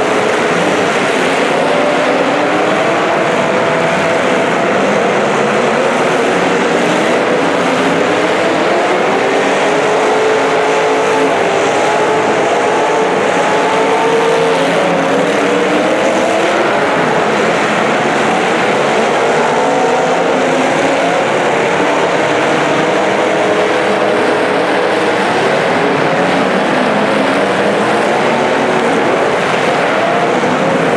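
Several demolition derby cars' engines revving at once, their pitches overlapping and sliding up and down without a break.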